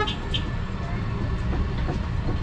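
Street background noise: a steady low rumble of traffic, with faint voices briefly near the start.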